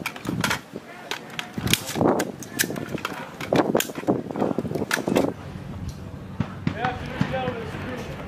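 Many sharp metallic clicks and clacks of M16-type service rifles being handled and dry-fired in a drill, packed into the first five seconds or so, with voices behind them.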